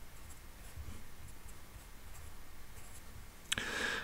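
Pencil lead scratching and tapping faintly on paper as handwriting is written, with a short, louder hiss near the end.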